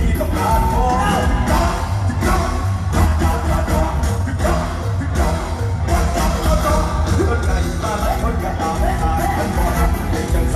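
Live mor lam music played loud through a stage PA: a band with a heavy, steady bass and a lead singer's voice over it.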